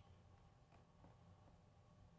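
Near silence: the room tone of a quiet church during a pause, with a faint low hum.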